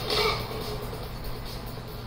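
Soundtrack of a martial-arts film fight scene played through computer speakers: a short loud burst right at the start, then a steady low background.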